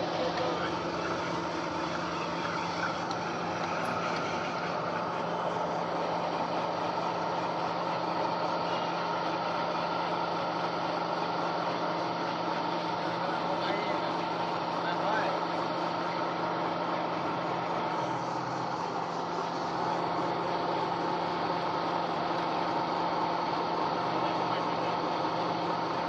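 Electric feed pellet mill running steadily under load, a constant motor-and-die drone as pellets are pressed out of the die and down the discharge chute.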